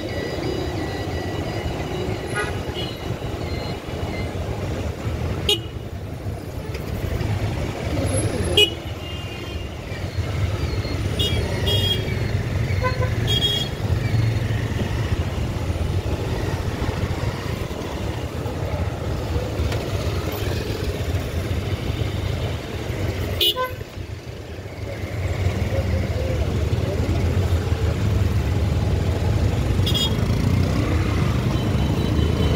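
Dense street traffic of motorcycles and cars, with engines running as a steady low hum. Several short horn toots come in the first half, with a sharp click a little before nine seconds in.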